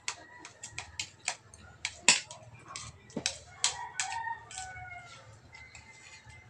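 Spoons and forks clinking and scraping against ceramic plates while people eat, in quick irregular clicks, the loudest about two seconds in. A drawn-out animal call with falling pitch sounds faintly in the background in the second half.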